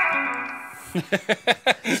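Electric guitar on a super clean amp preset, a chord ringing out and fading over about a second, followed by bursts of laughter.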